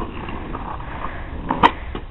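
Skateboard wheels rolling on asphalt, then a sharp clack of the board near the end as the tail is popped for an ollie.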